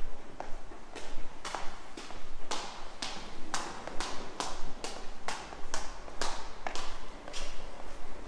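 Hard-soled footsteps on stairs, sharp clicks about two a second, loudest and quicker in the middle as a second person's steps pass close by.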